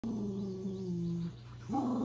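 Small dog growling at a person in two long, drawn-out grumbles, the second starting with a rise in pitch about three-quarters of the way through.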